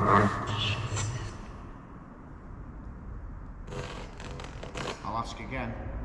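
Spirit box scanning through radio frequencies: choppy radio noise and broken snatches of broadcast voice. It drops quieter for about two seconds in the middle, then rapid chopping bursts return.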